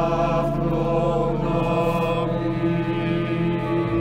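Church choir singing long, held notes with a gentle vibrato.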